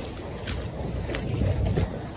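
Wind blowing on the microphone as a low rumble, with faint footsteps on a brick path about every two-thirds of a second.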